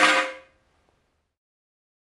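A single sharp metallic clang that rings briefly and dies away within about half a second, as a steel camshaft is set down onto the engine parts; then silence.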